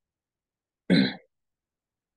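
A man clears his throat once, briefly, about a second in; otherwise silence.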